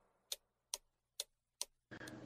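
Faint, evenly spaced ticking, a little over two ticks a second, with near silence between the ticks.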